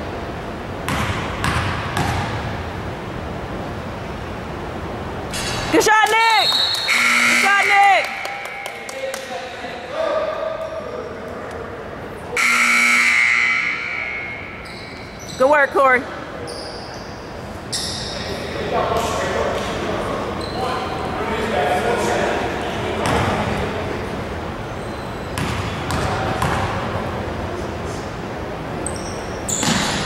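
Basketball dribbling and sneakers squeaking on a hardwood gym floor during play, with scattered shouts from players and spectators. The loudest moments are short bursts of squeaks about six, eight and fifteen seconds in. A steady note lasting about a second and a half sounds about twelve seconds in.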